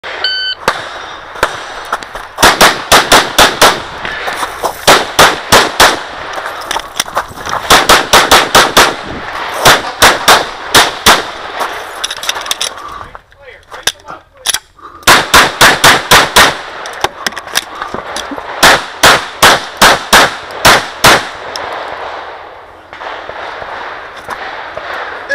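A shot timer's start beep, then rapid strings of 9mm pistol fire from a Glock 34, shot in quick groups with short pauses between them. There is a longer break about halfway through before a final run of shots.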